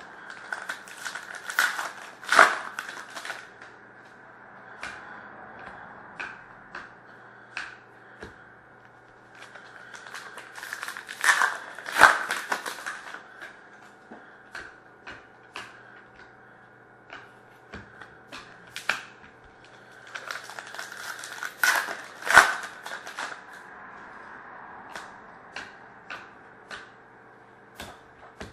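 Foil wrappers of Panini Prizm hockey card packs being torn open and crinkled, in three bursts about ten seconds apart, with light clicks and taps of the cards being handled in between.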